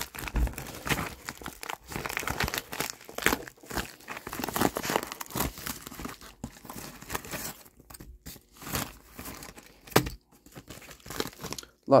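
Plastic packaging bag crinkling and rustling irregularly as it is pulled open by hand, with one sharp click about ten seconds in.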